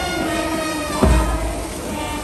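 Brass band music: sustained horn chords with a bass drum beat about a second in.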